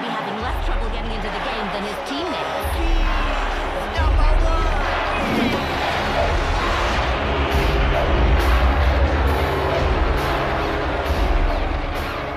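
Stadium crowd cheering over background music with a deep bass that grows louder about four seconds in.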